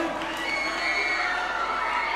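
Crowd cheering and shouting.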